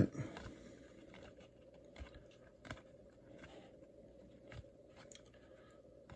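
Baseball cards being flipped through by hand: faint scattered ticks and slides of card stock as each card is moved to the back of the stack, over a faint steady hum.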